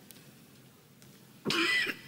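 A man's single short cough about one and a half seconds in, after a faint, quiet pause.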